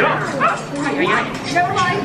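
The boat ride's soundtrack plays a cartoon character's high, squeaky voice, chattering with quick rises and falls in pitch.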